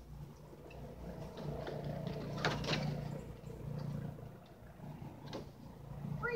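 A dog hopping back onto a raised fabric-and-metal-frame dog cot: a brief scrape and rattle about two and a half seconds in, with a few lighter clicks, over a steady low hum.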